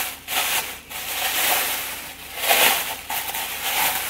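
Rustling and rubbing of packaging as items are dug out of a storage tub, coming in several irregular surges.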